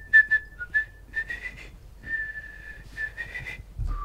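A person whistling a tune: a run of short notes, one longer held note in the middle, then a few quick notes rising slightly in pitch.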